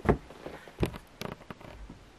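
Handling noise from the camera being gripped and moved: about five short knocks and bumps within two seconds, the loudest right at the start.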